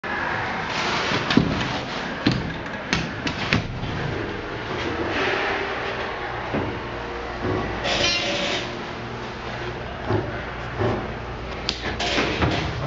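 Dover hydraulic elevator car running, with a steady low hum and scattered clicks and knocks from the cab.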